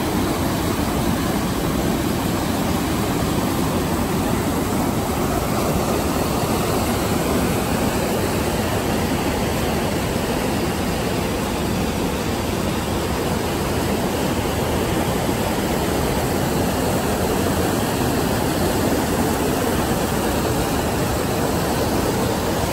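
Fast mountain stream rushing over boulders in white water: a loud, steady wash of water noise.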